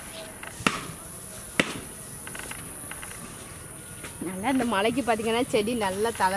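Insects, crickets or similar, singing a steady high-pitched trill in the background. Two sharp clicks come in the first two seconds. A voice starts talking about four seconds in.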